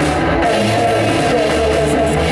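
Afro-rock duo playing live, electric guitar over a drum kit, loud and steady.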